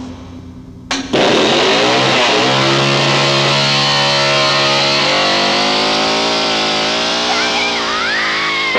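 Chainsaw starting up about a second in, its pitch rising as it revs, then running steadily at high revs. Near the end a high, wavering sound rises over it.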